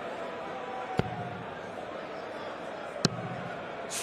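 Darts striking a bristle dartboard: two sharp thuds about two seconds apart, over a steady arena crowd murmur.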